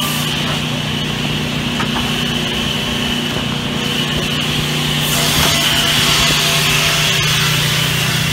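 Sawmill woodworking machinery running steadily on teak boards, a constant hum under a hiss. The hiss thins out after the first moment and comes back louder about five seconds in.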